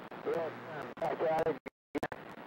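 A voice coming in over a CB radio through a hiss of static, with the squelch opening and cutting off abruptly.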